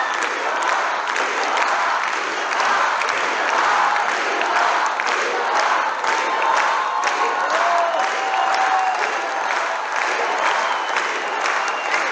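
A large concert-hall audience applauding and cheering, dense steady clapping with voices calling out above it.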